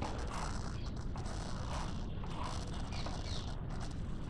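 Low, steady background noise (room tone and microphone hiss) with a few faint, soft indistinct sounds.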